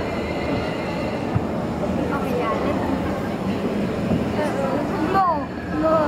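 Steady low rumble of a dark-ride boat gliding along its water channel, under a murmur of many people's voices. A short falling tone comes near the end.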